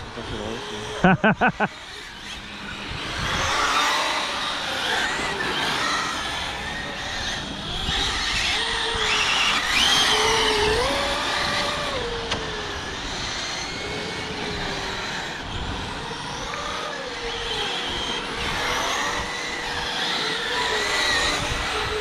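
Scale radio-controlled cars racing on asphalt: their motors whine up and down in pitch as the cars accelerate and brake, over tyre noise.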